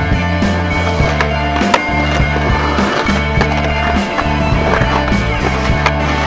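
Music with a steady beat, and from about halfway in a skateboard's wheels rolling across bare sandstone rock.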